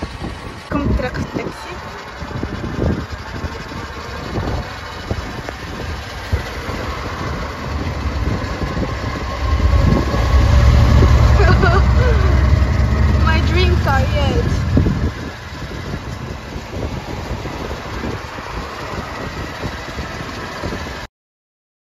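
Road and traffic noise heard from a moving vehicle on a city street. A much louder low rumble builds for about five seconds in the middle.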